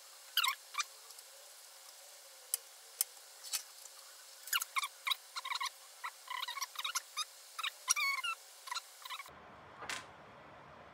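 Handling noise from assembling a plastic camera bracket: irregular small clicks and scrapes of plastic parts being worked together, with a few short squeaks of plastic rubbing on plastic.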